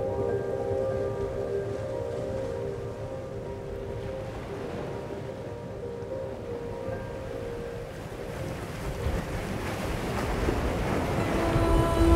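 Ocean surf washing and breaking, swelling louder near the end, under soft music with long held notes.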